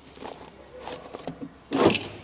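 Faint handling rustles, then one short, loud dull thump near the end as something knocks against the welder's sheet-metal casing.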